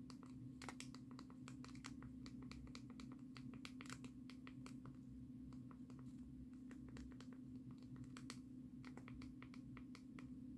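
Faint, irregular small clicks and taps, several a second, typical of a diamond painting pen picking up resin drills and pressing them onto the canvas, over a steady low hum.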